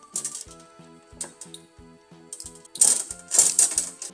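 Small tube cutter turned around soft 1/4-inch aluminium tubing, its cutting wheel clicking and scraping on the metal, with a few louder scraping bursts near the end as it cuts through. Light background music plays throughout.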